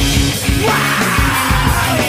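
Loud rock band recording: distorted guitars and pounding drums, with a yelled vocal coming in partway through.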